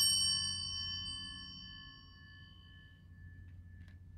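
Altar bells rung at the elevation of the host during the consecration, their ringing fading away over about two seconds. A light click comes near the end.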